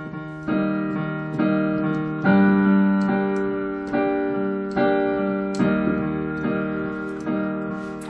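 Piano playing a slow two-chord pattern, G minor and E flat major: the right-hand chord is struck again and again, with a left-hand bass note pressed between, about one strike a second. Each strike rings and fades before the next.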